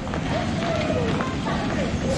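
Steady background noise of a large airport terminal hall, with faint distant voices.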